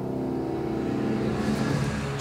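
Diapason D-183BG grand piano's final chord ringing out after the playing stops, its tones slowly fading with a long sustain; the piano is slightly out of tune.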